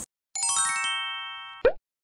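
Short logo sound effect: a quick run of chime notes stepping downward, ringing on together and fading, then a brief rising pop near the end.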